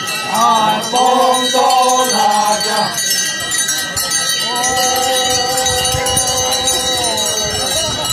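A group of men's voices chanting together: a few short rising-and-falling calls in the first three seconds, then one long held note from about halfway to near the end.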